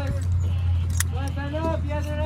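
Go-kart engines idling in the pit with a steady low hum, with voices talking over it and a sharp click about a second in.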